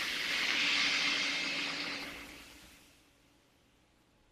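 Pineapple juice poured into a hot sauté pan of corn and oil, hissing loudly at once and dying away over about three seconds; the liquid deglazes the pan and starts steaming the corn.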